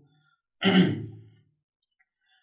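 A man's sigh, a single breathy exhale with some voice in it, starting about half a second in and fading out within a second.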